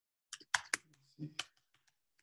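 Computer keyboard typing: a quick run of keystrokes, most of them in the first second and a half, then sparser taps.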